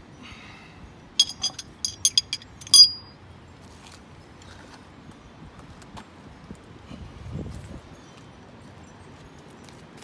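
Chrome steel acorn lug nuts clinking against one another, about eight sharp metallic clinks over a second and a half, the last one the loudest with a brief ring. A soft low rumble follows some seconds later.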